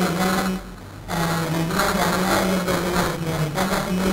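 A man's voice talking into a lectern microphone in long phrases at a fairly level pitch, with a short pause for breath about a second in.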